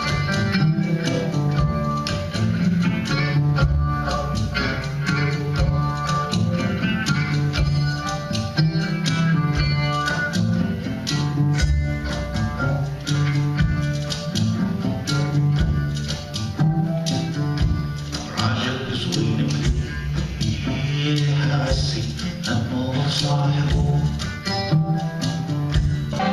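Live ensemble music: an oud plucked over hand percussion and cymbals, with bowed strings underneath, keeping a steady beat.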